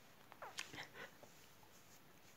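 Near silence, with a few faint squeaky, stifled giggles about half a second to a second in.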